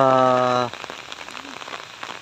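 Steady rain falling, an even patter. In the first part of a second it is briefly covered by a man's long, drawn-out held syllable.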